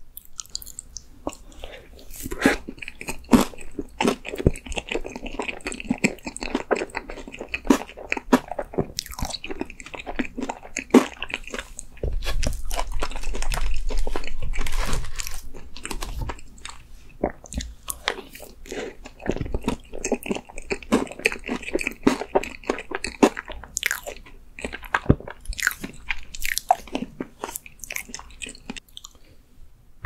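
Close-miked mouth sounds of eating ice cream cake: spoonfuls being bitten, crunched and chewed, with many small irregular clicks and a louder stretch about halfway through.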